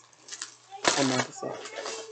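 Crinkling of a clear plastic snack bag being handled, with one short voice sound about a second in.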